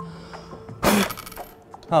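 One short, hard puff of breath blown across a penny lying on an acrylic tabletop, lifting the coin toward a tilted plastic cup, about a second in.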